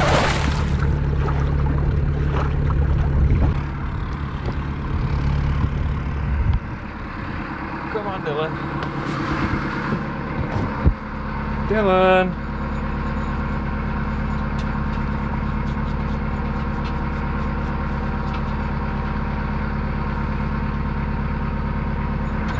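Narrowboat engine running steadily, its note changing about six and a half seconds in. Two short calls cut through it, around eight and twelve seconds in.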